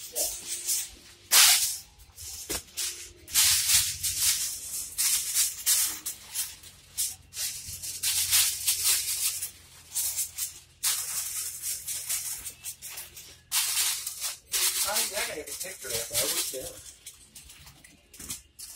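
Aluminium foil being pulled off the roll and crinkled as it is pressed and crimped over a disposable aluminium pan, in irregular bursts of crackling rustle.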